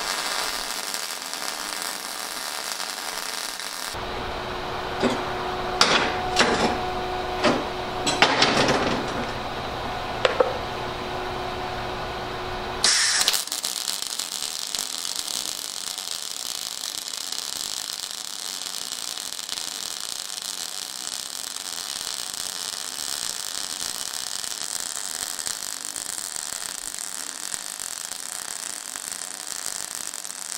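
Everlast iMig 200 MIG welding arc crackling steadily as a bead is laid on steel plate, at 19.5 volts with the arc force turned down for a softer arc. For about nine seconds in the middle the steady crackle gives way to a lower hum with a string of sharp pops.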